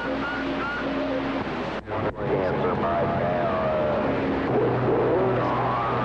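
CB radio receiver hiss with faint, garbled distant voices and steady whistle and hum tones coming through the static. The sound cuts out briefly twice about two seconds in.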